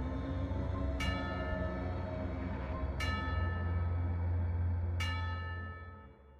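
Spooky intro music: a deep bell tolls three times, about two seconds apart, each stroke ringing on over a low steady drone, fading out at the end.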